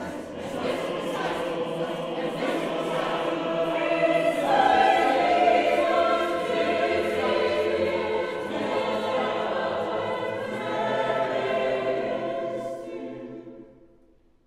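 Mixed choir of men and women singing sustained chords. The sound swells about four seconds in, then fades out near the end.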